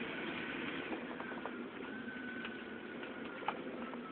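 Steady running noise of a moving vehicle, with a faint high whine held throughout and a few light clicks, one sharper near the end.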